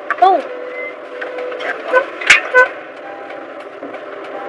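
A woman talking, heard inside a car, with a steady tone held for about a second and a half near the start.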